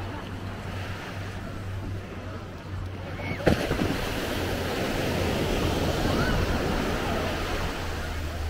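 Surf washing onto a sandy beach, with wind buffeting the microphone. A sharp knock comes about three and a half seconds in, and after it the wash grows louder.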